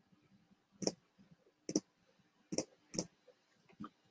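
Four sharp, faint clicks at uneven intervals, with a weaker one near the end, over quiet room tone.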